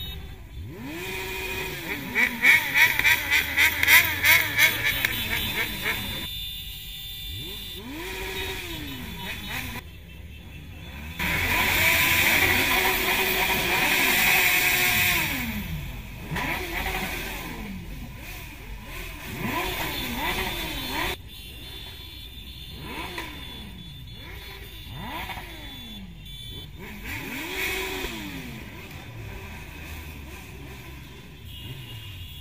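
Motorcycle engines in a group ride, repeatedly revving up and easing off, their pitch rising and falling again and again. The loudest stretches are a pulsing burst a few seconds in and a longer noisy rush in the middle.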